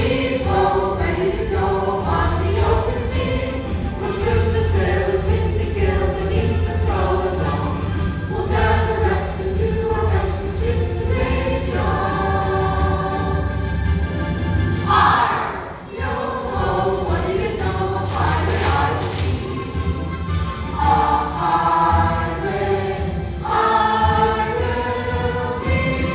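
A chorus of young performers singing a song together over instrumental accompaniment with a steady bass line.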